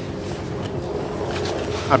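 Wind blowing across the microphone outdoors: a steady rushing noise with low rumble that swells a little toward the end.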